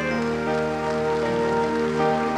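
Live orchestra playing slow, sustained chords that shift about half a second in, over a steady noisy patter.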